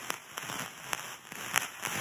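Crackle and hiss with scattered sharp clicks, a few louder than the rest, from a crackle sound effect laid over the opening title card.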